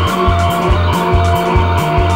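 A rock band playing a krautrock/space-rock instrumental live: drums keep a steady driving beat with hits about twice a second under low pulsing notes, while a synthesizer holds long sustained tones.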